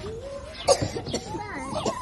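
Voices with a sharp cough about two-thirds of a second in.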